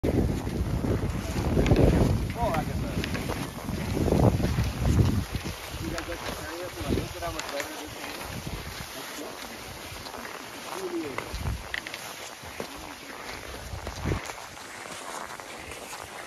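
Wind gusting on the microphone, heaviest in the first few seconds, over the steady swish of cross-country skis and ski-trailer runners gliding on groomed snow, with faint voices in the background.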